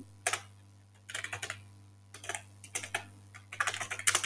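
Computer keyboard typing in short bursts of keystrokes, with a steady low hum underneath.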